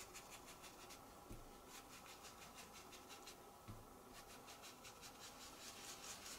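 Faint, rapid scratchy dabbing of a stencil brush working ink onto the edge of a card panel.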